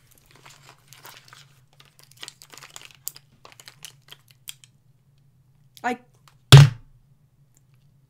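Plastic mascara tubes clicking and clattering against each other as a big handful is gathered up, a run of light scattered clicks. About six and a half seconds in comes one short, loud burst.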